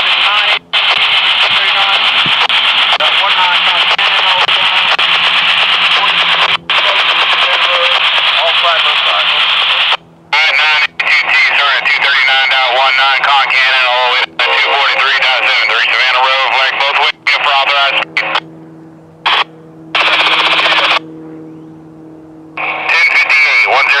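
Railroad radio traffic over a scanner: a garbled, hissy voice transmission for about the first ten seconds, then further short transmissions that cut on and off sharply with the squelch, with gaps between them near the end.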